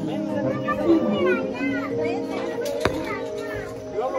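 Children playing and calling out over adult chatter, with music playing in the background. A single sharp click comes about three seconds in.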